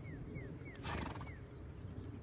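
A horse snorts once, a short blowing burst about a second in, with a steady low rumble of hooves trotting in arena sand beneath it. A bird repeats short falling chirps, about four a second, until shortly after the snort.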